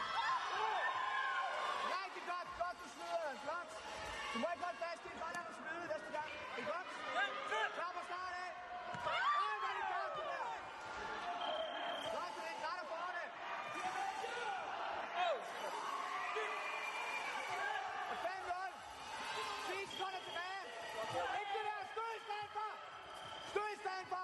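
Many voices calling and shouting over one another in a large hall, with occasional thumps of fighters' feet and bodies on the mat.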